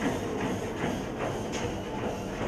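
A treadmill running under a person's steady footfalls, about two to three light knocks a second, over a low hum.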